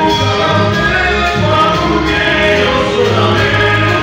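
Live gospel music: a group of men singing a hymn in harmony over electric guitar, bass guitar and keyboard.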